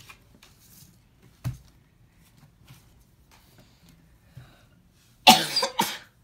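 A child coughs twice in quick succession near the end, loud and rough. Earlier, about one and a half seconds in, there is a single short tap.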